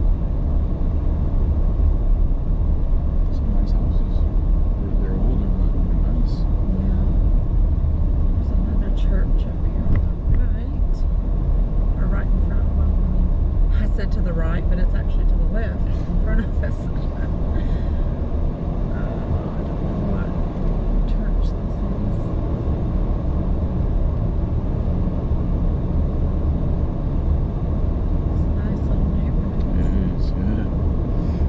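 A car driving along at low speed: a steady, low engine and road rumble.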